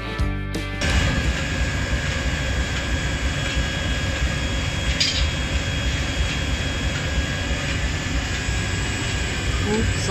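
Acoustic guitar music stops about a second in, giving way to the steady noise of a forge furnace and factory machinery running, with a constant whine in it and one sharp clank around halfway. A voice starts just at the end.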